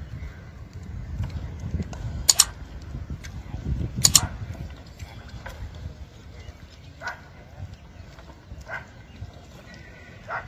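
Wheeled antique cannons firing: two sharp blasts, one about two seconds in (doubled) and one about four seconds in, over a low rumble.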